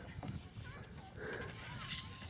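Birds calling: a few short chirps that rise and fall in pitch, over a low background rumble.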